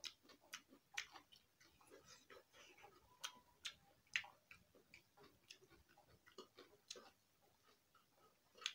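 Quiet eating sounds: irregular sharp clicks and wet smacks, about one or two a second, from chewing with the mouth and from fingers mixing rice on a steel plate.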